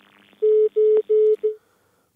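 Four short telephone beeps in quick succession over the phone-in line, the last one trailing off: the signal that the caller's call has been cut off.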